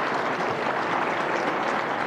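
Audience applauding and laughing, a steady dense clatter of clapping after a punchline.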